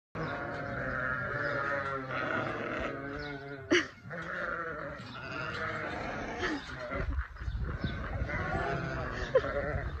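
A flock of sheep bleating, many calls overlapping one another throughout, with a short, louder burst just before four seconds in.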